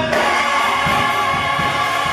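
Gospel choir singing together, the voices holding long sustained notes.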